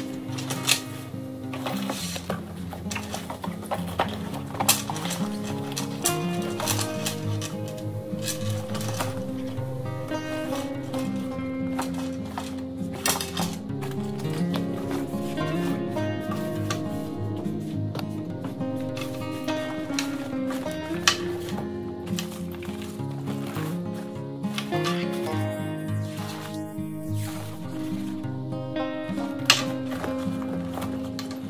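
Background music with a melody moving in steps over a held accompaniment.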